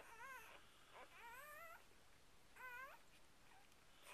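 Newborn puppies crying faintly while nursing: three short, high, wavering squeals, one at the start, one about a second in and one near the three-second mark.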